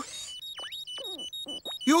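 Cartoon metal detector beeping in short high electronic pips, about four a second, mixed with falling swooping tones: the sign that it has found metal buried in the ground.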